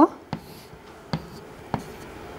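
Chalk drawing on a blackboard: faint strokes broken by three sharp taps of the chalk against the board.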